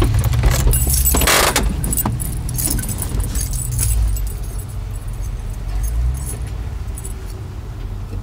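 Car running, heard from inside the cabin: a steady low rumble, with irregular light clicks and rattles and a brief rustling burst about a second in.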